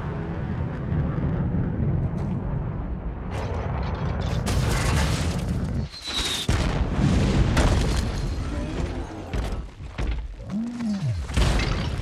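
Film sound effects of a missile strike: a deep, sustained rumble, then a series of heavy booms and crashes between about four and ten seconds in.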